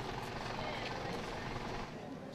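Steady, even background noise with a faint rumble, with no single distinct event.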